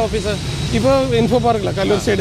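Men's conversational speech in Malayalam, over a low, steady background rumble.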